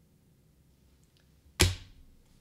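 A single sharp knock close to the microphone about a second and a half in, with a dull low thud under it, dying away quickly.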